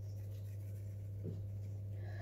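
A steady low hum under faint soft shaking of a metal powdered-sugar shaker being shaken over cookies, with one small tap about a second in.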